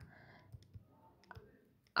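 A few faint, scattered taps on a phone's touchscreen while writing on it by hand.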